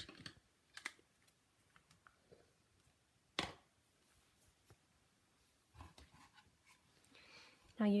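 Faint taps and clicks of papercraft tools being put down and picked up on a tabletop, with one sharper click about three and a half seconds in.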